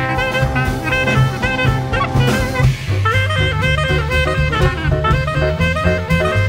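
Small jazz band playing live: clarinet and trombone lines over upright bass and drum kit.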